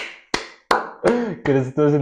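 Hand claps, about three a second, each with a short room echo, giving way about a second in to a man's voice.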